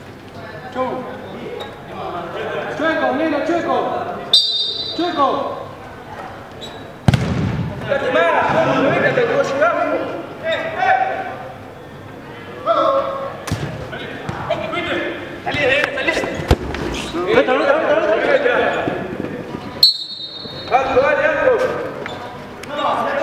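Players and onlookers talking and calling out on an indoor five-a-side football pitch, with a sharp thud of a football being struck about seven seconds in and a few lighter ball thuds later.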